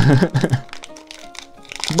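Foil booster-pack wrapper crinkling faintly as it is pulled open, over soft background music with a few held notes; a voice trails off at the start.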